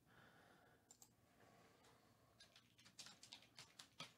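Near silence: room tone with a few faint clicks, two about a second in and a quick run of them near the end.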